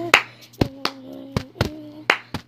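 Sharp hand claps, about five in two seconds at an uneven pace, the first the loudest. Behind them runs a low, steady hummed note.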